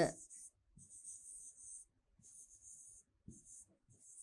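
A pen writing on a board: a faint run of short scratchy strokes, each about half a second to a second long, with brief pauses as the letters are formed.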